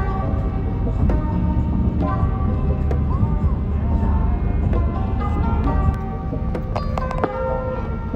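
Background music with shifting melodic notes over a steady low rumble, the rumble fitting road noise inside a moving car.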